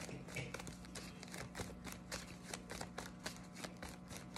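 Deck of tarot cards being hand-shuffled: a quick, irregular patter of soft card clicks and slaps.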